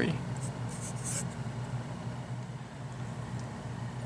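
Felt-tip marker writing on paper: a few short strokes in the first second or so, over a faint steady low hum.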